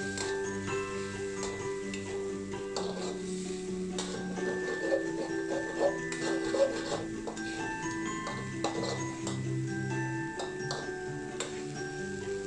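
Background music with held notes changing every second or so. Over it, a few sharp clinks of a metal spatula against a steel wok, loudest six to seven seconds in.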